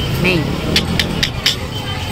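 A vehicle engine running steadily with a low rumble, with a quick run of four or five sharp clicks around the middle and faint voices.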